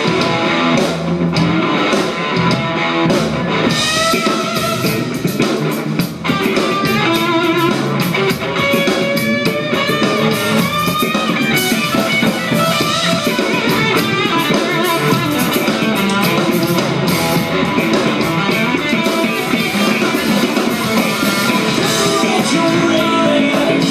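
Live band jam with no vocals: electric bass and drum kit playing together, with a wavering melodic lead line of plucked notes over them.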